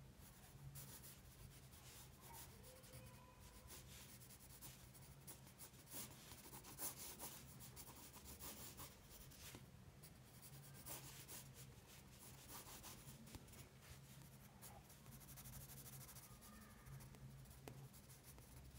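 Faint scratching of a soft 6B graphite pencil on sketchbook paper, in quick, irregular short strokes.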